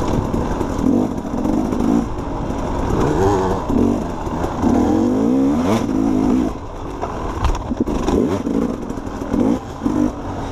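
Off-road dirt bike engine revving up and down several times as the throttle is worked, with rattles and knocks from the bike over rough ground.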